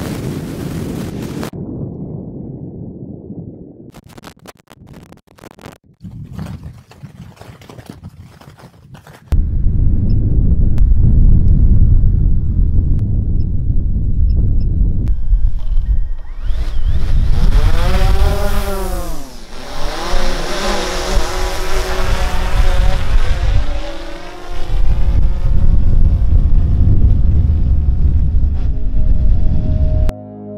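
DJI Phantom 4 quadcopter drone's propellers whining as it lifts off and flies, starting about halfway through, the pitch sweeping down and back up several times. From about a third of the way in, a heavy rumble of wind or rotor wash buffets the microphone.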